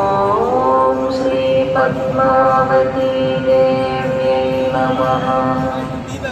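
Hindu devotional chanting: long, steady held notes that glide up to a new, higher pitch about half a second in.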